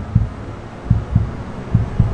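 The Mercedes Vision AVTR's heartbeat sound playing in the cabin: a low double thump, 'doom, doom', repeating about once a second. It is the car's sign that its palm scanner in the control unit is reading the driver's heartbeat.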